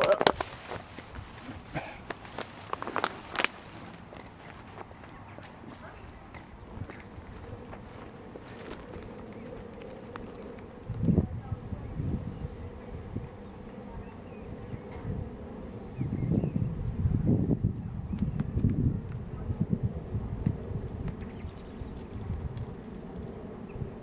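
Wind buffeting the microphone in gusts of low rumble, strongest in the second half. A faint steady buzz runs underneath. A few short knocks and rustles come in the first few seconds.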